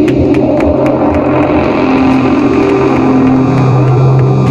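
Black metal band playing live: distorted electric guitar and bass held over drums, with sharp drum and cymbal hits several times a second.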